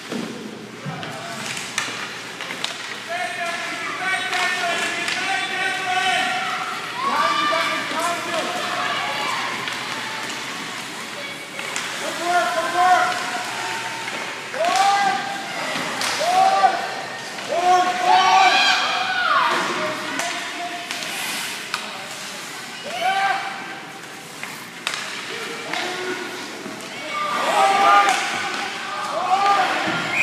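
Spectators at an ice hockey game shouting and calling out to the players, many overlapping raised voices. Scattered sharp knocks and thuds from sticks, puck and boards run under the shouting.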